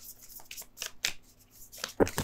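Tarot deck being shuffled by hand, the cards giving a quick, irregular series of sharp flicks and slaps.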